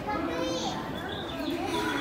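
Young children talking and calling out in high voices.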